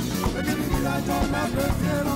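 Live Catalan rumba: strummed nylon-string acoustic guitars playing a driving rhythm under a male lead vocal.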